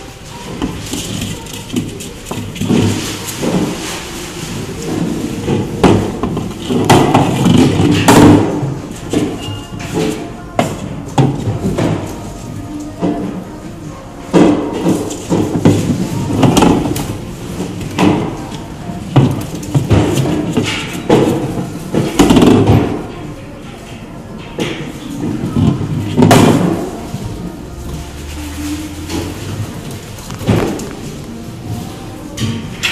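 Repeated irregular knocks and thumps as a ball is pushed by a black-footed ferret and bumps against the wooden walls and floor of its enclosure, over a background of music and voices.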